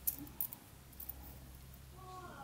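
A few faint clicks from a small metal adjustable-wrench keychain being handled as its adjusting worm screw is turned by thumb, over a low steady hum.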